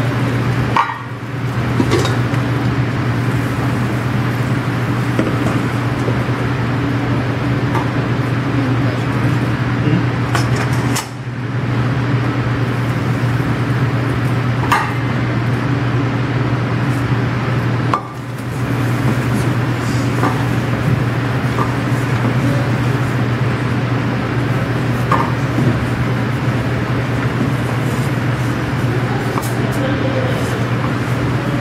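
Steady low mechanical hum and hiss of kitchen equipment running, with scattered light clinks of steel pans and bowls being handled.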